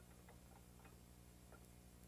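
Near silence: a steady low hum with a handful of faint, irregular clicks in the first second and a half.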